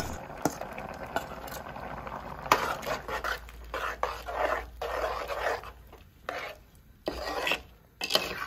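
A metal spoon stirring thick ground masala paste into a metal pot of cooked vegetables and dal, in uneven strokes with wet scraping and light clinks against the pot. The strokes ease off and grow quieter near the end.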